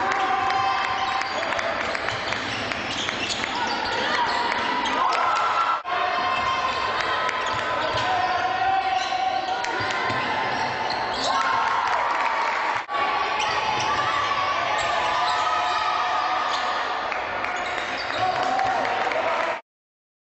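Sound of an indoor basketball game: the ball bouncing on the court amid continuous crowd noise and voices in the hall. It runs as three stretches joined by abrupt cuts about six and thirteen seconds in, and stops suddenly just before the end.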